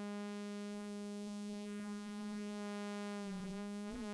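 A steady sawtooth-wave synth tone playing through the BMC105 12-stage JFET phaser. The phaser's frequency is set below the saw's fundamental, so it has no audible effect. Near the end the tone wavers as the phaser is adjusted by hand.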